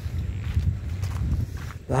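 Footsteps of a person walking on soil, over a low rumble. A man's voice exclaims at the very end.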